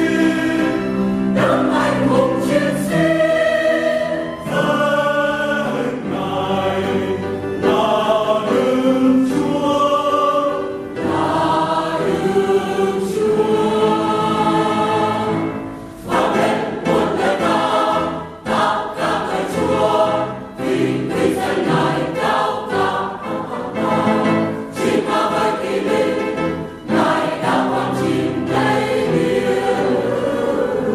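Church choir singing a Vietnamese hymn in parts.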